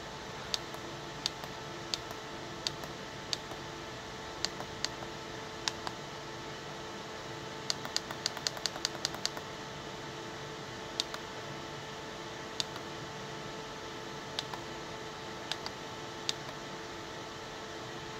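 Button clicks on a Velleman handheld oscilloscope, pressed one at a time about once a second, with a quick run of about ten presses near the middle and a few scattered ones later. Under them runs a steady faint hum.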